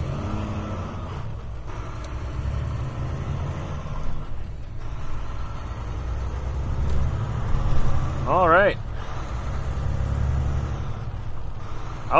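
Semi-truck diesel engine pulling away and accelerating, heard from inside the cab; the engine sound dips briefly three times as the driver shifts up through the gears.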